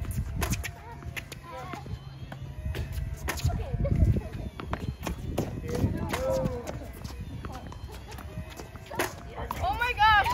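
Children's voices calling out and squealing, mixed with many short sharp pops of tennis balls bouncing and being struck by rackets. A loud, high-pitched child's shout comes near the end.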